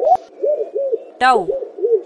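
Dove cooing: a steady run of short, low, arched coos, about three or four a second. A rising swoosh effect opens it, and a voice says "Dove" just over a second in.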